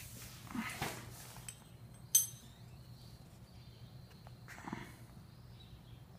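Mostly quiet, with a few faint knocks and rustles and one short, sharp click about two seconds in.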